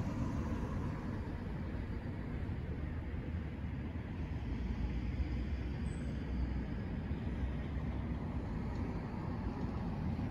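Steady low background rumble, even throughout, with no distinct sounds standing out.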